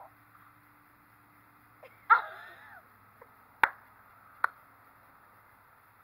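A person's short, high squeal about two seconds in, then two sharp pops a little under a second apart, as mayonnaise is squeezed from a plastic squeeze bottle over someone's head.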